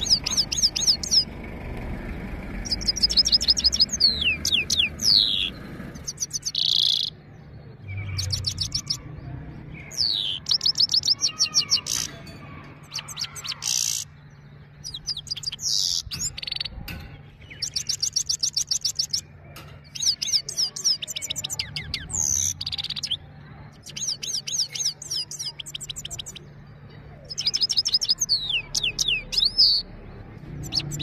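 Himalayan (grey-crowned) goldfinch singing: a string of twittering phrases, each a second or two of rapid, high notes with some gliding whistles, broken by short pauses.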